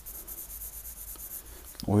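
Pencil lead scratching across drawing paper as feather strokes are shaded in.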